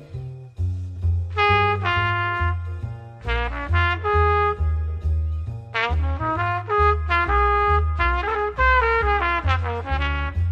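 Jazz trumpet playing melodic phrases over a double bass plucking a steady walking line of about two notes a second. The bass plays alone at first and the trumpet comes in about a second in.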